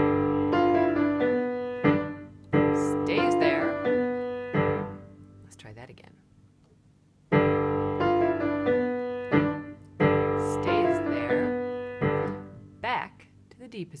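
Piano playing the same short passage twice, with a brief pause between. The left hand shifts a fixed-interval chord up to a new position and back under a repeating right-hand figure.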